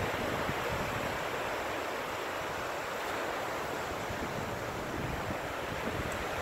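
Steady wash of ocean surf close by, with wind on the microphone.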